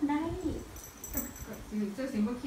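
Dog giving a short whining vocalisation in the first half second while it is held in a hug.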